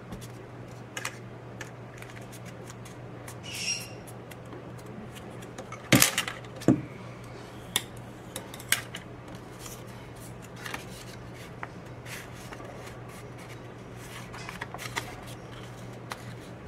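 Heavy green paper being handled, folded and creased with a bone folder on a table: scattered small taps, rustles and scrapes, with a sharp knock about six seconds in. A steady low hum runs underneath.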